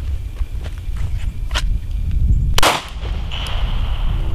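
A single handgun shot about two-thirds of the way through, over a steady low background rumble.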